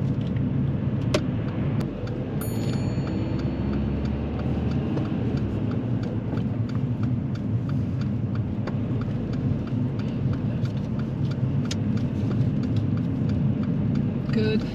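Steady engine and road rumble inside a car's cabin while the turn indicator ticks at an even rhythm, a few clicks a second, signalling for a left turn at a roundabout. A brief high electronic beep sounds about two and a half seconds in.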